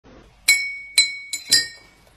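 Glass clinking: four sharp, ringing chinks about half a second apart, the third one weaker, each ringing out briefly before the next.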